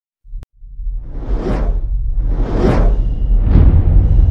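Logo-animation sound effects: three whooshes about a second apart over a deep rumble that builds in, after a short click just as the sound begins.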